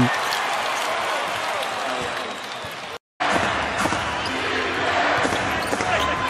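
Steady crowd noise in a basketball arena, with a ball being dribbled on the hardwood court. The sound cuts out abruptly for a moment about three seconds in.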